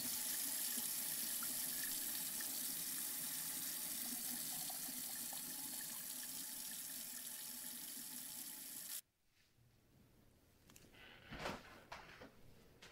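Water running steadily from a tap into a sink, starting abruptly and cutting off suddenly about nine seconds in. A soft thump follows near the end.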